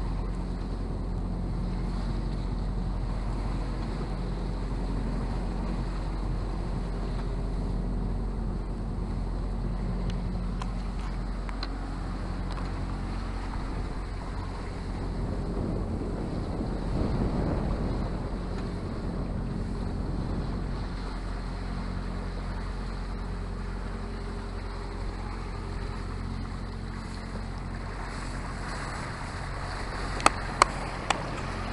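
Wind buffeting the microphone and sea water rushing past the hull of a yacht under way, over a steady low drone. A louder surge of water comes about halfway through.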